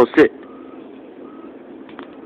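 Steady faint background noise with two faint, even beeps less than a second apart, after a man's short command at the start.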